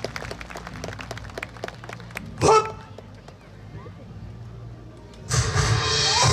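A performer's single loud shouted call about two and a half seconds in, over scattered clicks and a low hum. Loud yosakoi dance music starts abruptly near the end.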